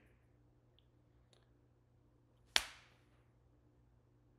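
A single sharp impact, like a slap or knock, about two and a half seconds in, dying away quickly against a near-silent room with a couple of faint clicks.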